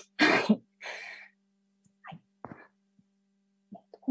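A short breathy vocal noise from the speaker, like a soft laugh or throat clearing, followed by a weaker exhale. Then a few faint mouth clicks over a low steady hum.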